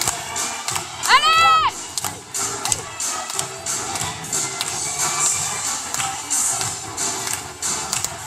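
Dance music with a steady beat playing under a cheering crowd in a hall, with one loud high whoop that rises and falls about a second in.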